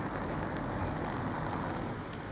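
Steady traffic noise from cars driving along a city street, a car engine and tyres on asphalt approaching at low speed.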